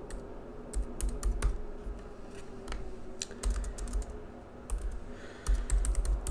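Typing on a computer keyboard: irregular key clicks at an uneven pace, over a faint steady hum.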